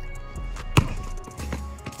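A basketball bouncing hard once on an asphalt driveway about a second in, with a few fainter knocks after it, over background music.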